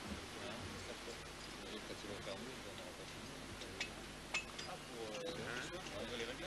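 Indistinct voices of several people talking in the background, with a few short sharp clicks, the loudest a little past the middle.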